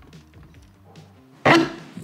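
A sudden loud knock about one and a half seconds in, dying away over half a second: a shop vacuum's stainless-steel tank being set down onto the battery it sits on. Before it, only faint low background.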